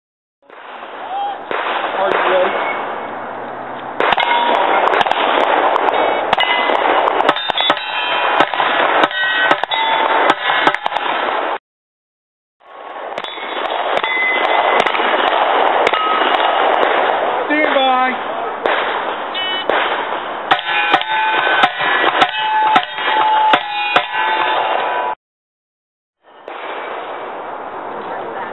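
Bursts of rapid rifle shots in quick succession over loud steady background noise, some shots followed by short ringing tones as steel targets are hit. The sound cuts off abruptly twice.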